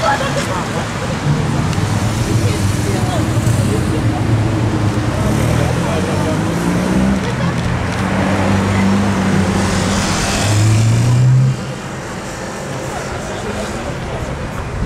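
Cars passing on a street, led by a Ferrari SF90 Spider's twin-turbo V8 accelerating past. Its engine pitch climbs to a loud peak about eleven seconds in, then cuts off sharply as the driver lifts.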